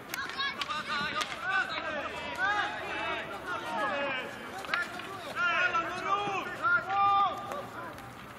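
Field hockey players shouting and calling to each other across the pitch, many short overlapping raised voices, loudest in the second half, with a few sharp knocks among them.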